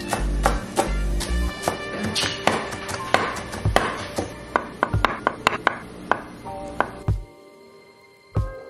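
Chef's knife chopping cilantro on a wooden butcher-block board: irregular sharp strikes, with a quick run of chops around five seconds in. Background music with a bass beat plays under it and drops away near the end.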